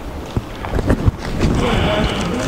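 A sheet of paper being unfolded and handled close to a pulpit microphone, rustling with irregular sharp crackles that grow louder and steadier near the end.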